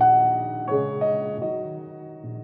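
Slow, gentle piano music: a chord struck at the start and a few more notes about a second in, each left to ring and fade.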